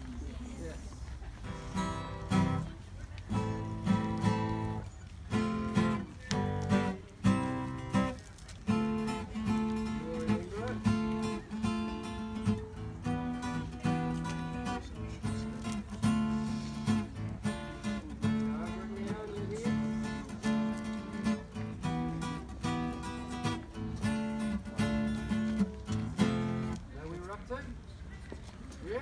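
Acoustic guitar strummed, opening with a few separate chords, then a large group of schoolchildren singing their school song together over it; the music stops about a second before the end.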